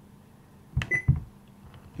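Button presses on a Whistler TRX-2 scanner's keypad: a few quick clicks with a short high key beep about a second in.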